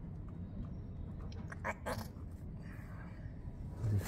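A socket on a sliding T-bar turning a sump-pan bolt under a Suzuki Bandit 600 engine, with a few sharp metal clicks about a second and a half to two seconds in.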